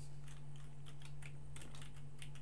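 Typing on a computer keyboard: irregular light key clicks, several a second.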